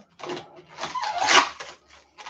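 Sticky protective plastic film being peeled off a panel: a short rip, then a longer, louder one that ends shortly before two seconds.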